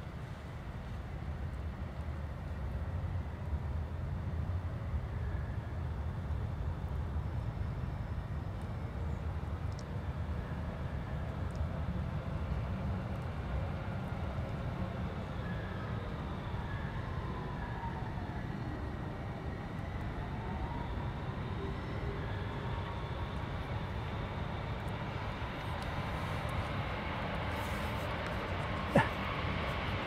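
Steady low rumble of city traffic, with a fainter engine note falling and rising in pitch near the middle as a vehicle passes. A single sharp knock comes near the end.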